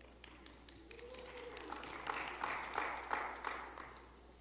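Congregation applauding: many hands clapping, swelling about a second in and dying away near the end.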